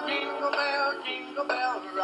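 Christmas song with singing over music, played by an animated Santa Claus figure, with some long held notes.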